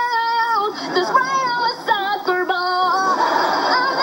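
A young girl singing a made-up song about a soccer ball in a high voice, holding long notes and sliding between pitches.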